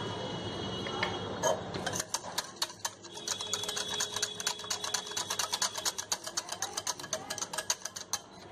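Wire whisk beating thin besan batter in a glass bowl, its wires clicking against the glass. After a couple of separate clicks, the strokes settle from about two seconds in into a fast, even rhythm of about seven clicks a second.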